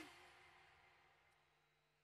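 Near silence: the stream's music and commentary cut off at the very start, a short tail dying away within about a second and a half, leaving only a faint steady hum.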